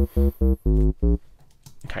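Simple synth bass line from Logic's ES M synthesizer, played dry without the Sub Bass plug-in's generated harmonics: a run of short, separate notes with a strong low end that stops a little over a second in.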